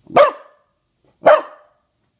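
A corgi barking twice, loud and sharp, about a second apart.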